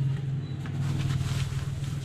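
A steady low hum, with light rustling of a padded jacket being handled near the middle.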